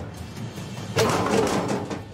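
A short laugh about a second in, over background music.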